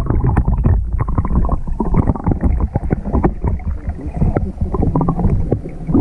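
Water sloshing and churning heard through an action camera's microphone held underwater: a dull, muffled sound with the high end cut off, full of irregular knocks and thuds.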